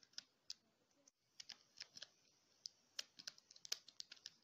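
Keys of a Collège 2D+ scientific calculator being pressed one after another: a run of soft, sharp clicks, several a second, with a short pause about a second in.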